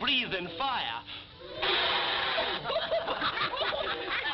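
Several cartoon men laughing and snickering together in mocking chuckles. There is a short lull about a second in, then the laughter swells again.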